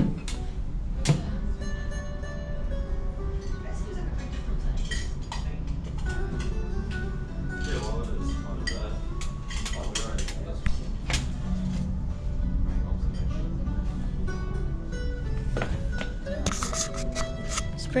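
Background music and indistinct voices over a steady low hum, with scattered clinks and knocks.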